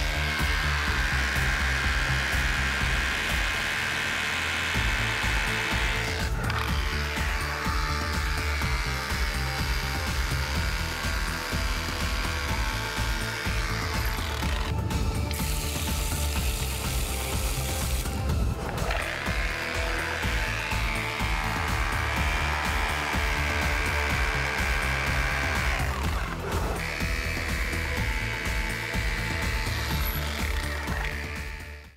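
Rotary hammer drill hammering a copper ground rod down into the soil, under background music. For a couple of seconds around the middle, a garden hose sprays water at the base of the rod to soften the ground.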